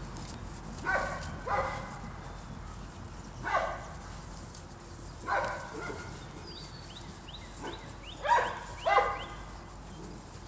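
Presa Canario puppies barking during a tug game with a towel: about six short, separate barks, two of them in quick pairs near the end.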